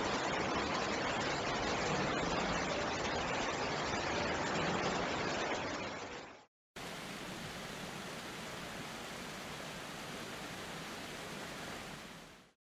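Floodwater rushing through a subway station as a steady, even rush of water noise. It cuts off about six and a half seconds in and gives way to a quieter steady rush.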